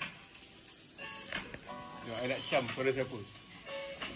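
A song playing, with a sung voice over held instrumental notes. The singing is strongest in the second half.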